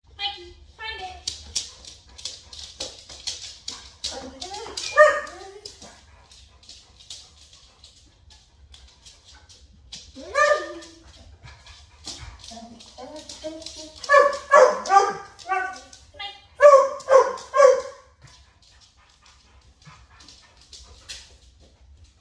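A dog barking: a single bark about five seconds in, another about ten seconds in, then a quick run of short barks between about fourteen and eighteen seconds.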